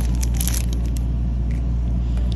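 A steady low rumble throughout, with a few brief crinkles of the clear plastic wrapping around a small acid dropper bottle being handled, about half a second in.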